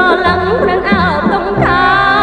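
Classic Cambodian pop song: a singer's voice with a wavering vibrato carries the melody over a band with bass.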